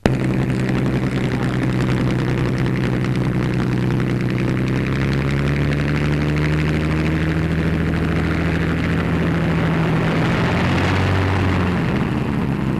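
Propeller aircraft's piston engine running loud and steady, its note sinking a little in the last few seconds.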